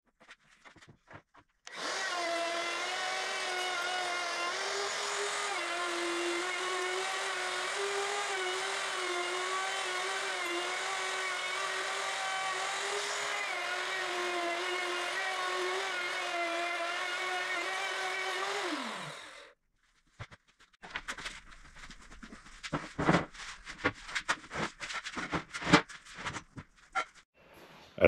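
Handheld router cutting relief recesses into the back of a ¾-inch plywood panel: a steady high motor whine whose pitch wavers slightly as it cuts. It runs for about seventeen seconds, then the pitch falls as the motor spins down. A few scattered knocks and handling clicks follow.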